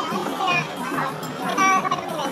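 Two women chatting at a table, their voices overlapping, with music in the background; one voice rises louder and higher near the end.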